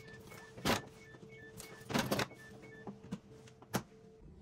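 Groceries being put away in an open refrigerator: a few sharp knocks and clinks as bottles and items are set on the shelves and in the wire bottle rack, over a steady hum and a faint, rapid series of short high beeps. A last knock near the end comes as the refrigerator door swings shut.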